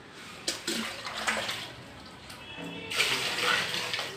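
Water from a plastic mug being poured and splashed into a steel pot of water, in a few bursts, the longest and loudest near the end.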